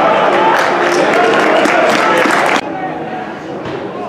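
Several voices of players and spectators shouting and calling out at a football match, with sharp clicks among them. The sound cuts off abruptly about two and a half seconds in, leaving quieter field ambience with faint voices.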